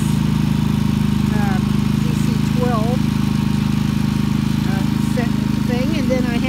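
A Predator 3,000/3,500-watt inverter generator running at a steady, even speed.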